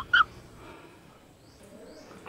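A person's chuckle ends in its last short pulse right at the start, then quiet room tone with a couple of faint high chirps near the end.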